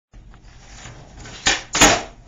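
A skateboard trick on carpet: a sharp knock as the tail pops, then a louder knock about a third of a second later as the board lands under the skater's feet. The landing is clean.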